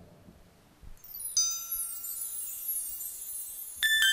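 A descending run of high, ringing chimes, like bar chimes swept by hand, starting about a second in with each note ringing on. Keyboard music starts just before the end.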